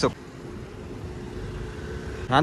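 A car running as it drives along a street: a steady, low engine and road rumble.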